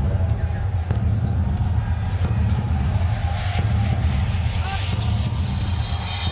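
Arena sound system playing a pre-game intro video's soundtrack: a loud, steady, deep bass rumble with indistinct voices over it.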